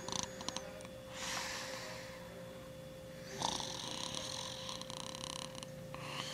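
A man snoring while passed out drunk: two long snores, the second starting about halfway through.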